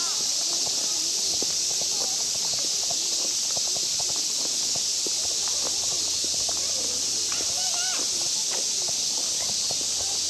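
Outdoor park ambience: a steady high hiss with distant people's voices and short calls scattered through it, and footsteps on a paved path.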